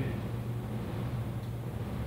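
A steady low hum with faint background noise and no distinct event.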